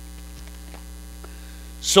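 Steady low electrical mains hum, with faint steady tones above it, during a pause in a man's speech.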